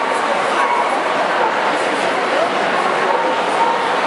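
A dog barking and yipping a few times over a steady murmur of crowd voices.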